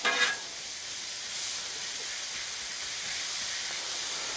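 Zucchini and yellow squash noodles sizzling in butter and olive oil on a hot flat-top griddle: a steady hiss.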